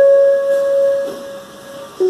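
Electronic keyboard: one note of an arpeggiated G-flat major-seventh chord held and fading away over about two seconds.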